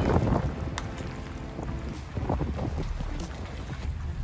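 Pickup truck's engine running as it pulls away towing a car trailer, with wind buffeting the microphone.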